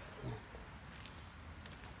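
A short, low vocal sound, like a murmur or hum, about a quarter of a second in. After it there is only faint outdoor background with a few soft clicks.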